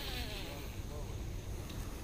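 Faint distant voices over a steady outdoor background hiss.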